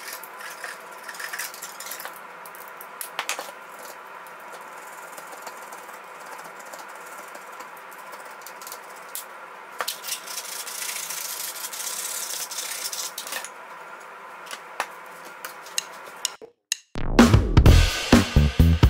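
Hand-tool work on a small pine workpiece: a utility knife cutting and paring the wood, with light knocks and clicks as it is handled and a faint steady hum behind. About ten seconds in there are a few seconds of scraping. After a brief silence near the end, music with a drum beat starts.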